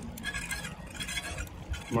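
Shimano road hydraulic disc brake rubbing on its rotor while riding, a light, intermittent metallic scraping. The caliper has drifted out of alignment, with one piston pushing out more than the other.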